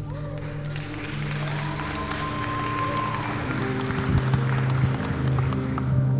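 Audience applauding over slow background music of held low notes.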